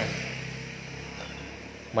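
Steady low hum of a vehicle driving slowly along a street, with engine drone and road noise.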